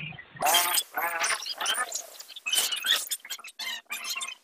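Raised, high-pitched voices shouting in a scuffle, followed by a run of irregular clicks and knocks.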